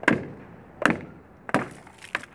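Bare hand striking a whole coconut held just above the ground: three sharp blows about three quarters of a second apart, and the shell splits open, spilling its water.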